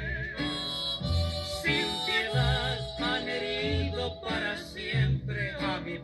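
Mexican ranchera song playing over an FM radio broadcast, here an instrumental passage between sung lines, with wavering melody lines over a recurring bass beat.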